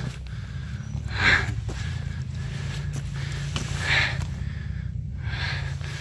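Polaris RZR 1000 side-by-side's parallel-twin engine running at low revs as it crawls over rocks. Two short hissing bursts stand out over it, about a second in and again near four seconds.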